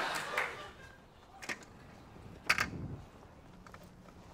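Music fading out, then two short taps about a second apart as a low hurdle is handled on a running track.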